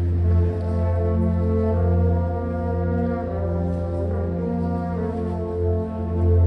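School wind ensemble playing slow, sustained brass chords over a held low bass note, with horns and low brass prominent and the harmony shifting about once a second.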